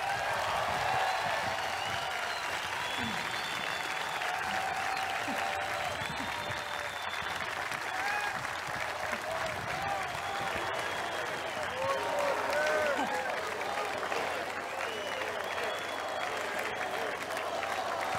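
Large crowd applauding steadily, with scattered voices calling out over the clapping.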